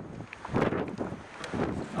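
Wind buffeting the microphone in irregular gusts, with the strongest rush about half a second in.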